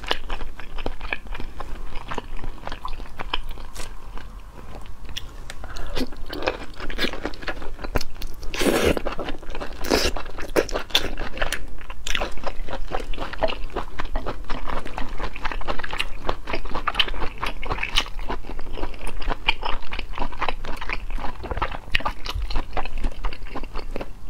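Close-miked chewing of cooked sea snail meat: a dense run of wet, crunchy bites and mouth smacks, with two louder noises about nine and ten seconds in.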